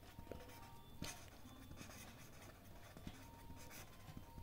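Faint scratching of a marker pen writing on paper, in short strokes with an occasional light tick of the tip.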